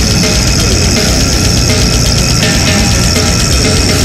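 Brutal death metal: heavily distorted guitars, bass and drums playing loud and dense without a break, with a bright cymbal wash on top.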